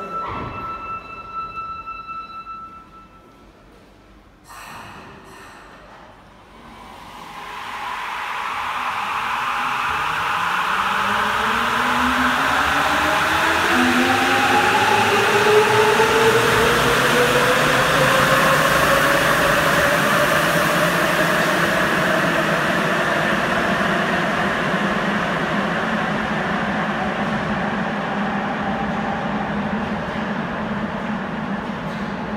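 Sapporo Municipal Subway Tōhō Line 9000-series rubber-tyred train pulling out of an underground station: after a chime that stops about three seconds in and a short clatter of knocks about five seconds in, the traction motors set up a whine that climbs steadily in pitch as the train accelerates, under a rising rumble that stays loud as it runs into the tunnel.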